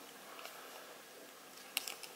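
Faint handling of a trading card and its clear plastic sleeve as the card is slid in, with a couple of small sharp clicks near the end.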